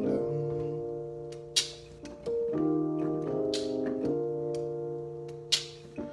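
Electronic keyboard with a piano sound playing slow, held chords in E-flat, the chord changing several times. Sharp snaps land about every two seconds over the chords.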